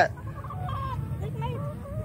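Domestic hens clucking: a few short, soft, wavering calls from birds being held and walking about.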